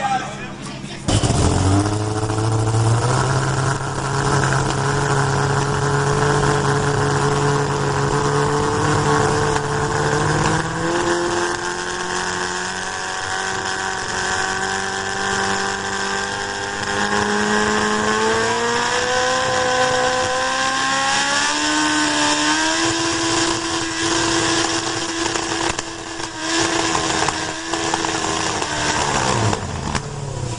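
A race car engine starts up abruptly and runs, its pitch creeping upward in a few steps over most of half a minute, then dropping away near the end.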